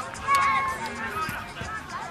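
A sharp knock at the very start, then a short, high-pitched shout about a third of a second in, followed by fainter calls.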